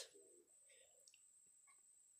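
Near silence: room tone with a faint steady high whine and a few faint soft ticks from a sticker sheet being handled.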